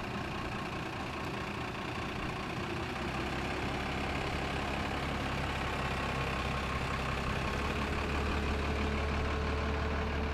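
Engine of a vintage Routemaster double-decker bus running as it drives past, with a low rumble that grows a little louder from about three seconds in, over traffic noise.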